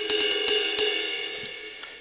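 Electronic drum kit's sampled crash cymbal, struck once at the start and ringing out, fading over about two seconds.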